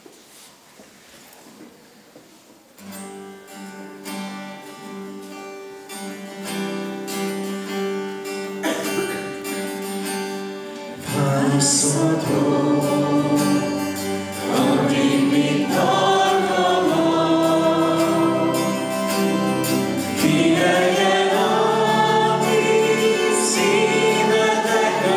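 A hymn: after a quiet start, an acoustic guitar plays an introduction, and about eleven seconds in the congregation joins in singing with it, the sound growing fuller and louder.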